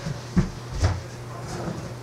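A few dull knocks, the two loudest about half a second apart, over a steady low hum.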